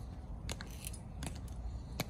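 Footsteps of soldiers in hard-soled dress shoes clicking on pavement as they walk, about two sharp steps a second, over a low rumble.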